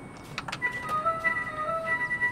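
Coin-operated digital scale playing its simple electronic jingle while it weighs, a held high beep over a few stepping lower notes, after a couple of short clicks.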